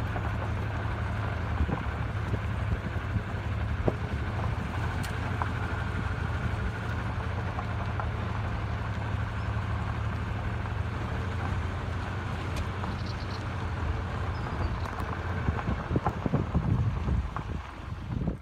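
A car driving slowly along a dirt track: a steady low rumble of engine and tyres, with a few light ticks and knocks.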